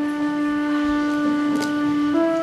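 Concert flute holding one long, steady low note, stepping up to a higher note right at the end.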